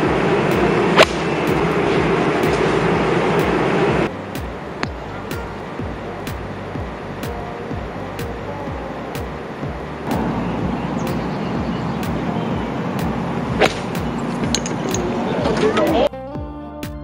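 A golf iron striking the ball twice, sharp cracks about a second in and again near the end, over the steady murmur of a gallery.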